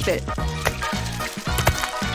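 Background music over food sizzling in a frying pan, with two short clicks, one about a third of the way in and one near the end.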